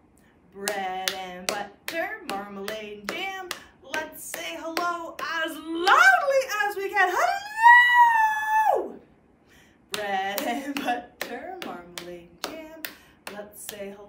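A woman chants a rhythmic rhyme with hand claps in time. About seven and a half seconds in she gives one long, loud call of "hello", then the chant with claps starts again.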